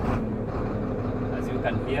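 Sinotruk HOWO 371 truck's six-cylinder diesel engine idling steadily just after starting, heard from inside the cab.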